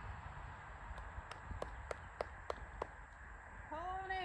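A run of about seven short, sharp clicks, evenly spaced at about three a second, over a low rumble. A voice starts just before the end.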